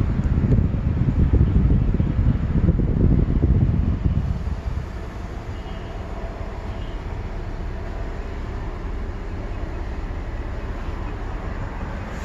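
Low, steady hum in the cab of a parked, switched-on 2017 Ford F-150; a louder, uneven rumble fills the first four seconds or so, then drops away to the quieter steady hum.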